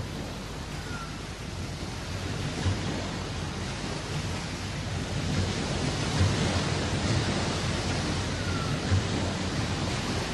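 A steady rushing noise like surf or wind, growing slowly louder, with two faint short chirps: an ambient sound-effect bed opening a worship track.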